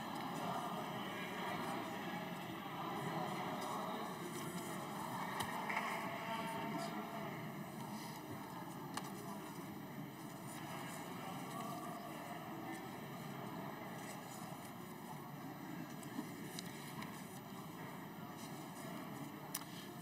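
Indistinct murmur of many voices chattering in a large parliamentary chamber, a steady low hubbub with no single voice standing out.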